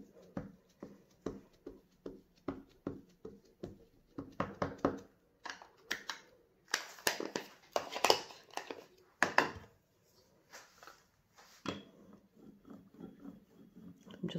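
A Distress Ink pad tapped repeatedly onto a plastic gel printing plate, about two to three soft taps a second. Around the middle come a few louder knocks and scuffs as ink pads are handled and swapped, then fainter taps again.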